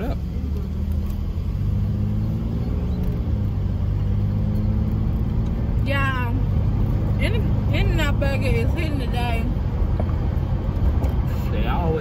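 Steady low hum of a car running, heard from inside the cabin. A high-pitched voice sounds briefly about six seconds in and carries on for a few seconds.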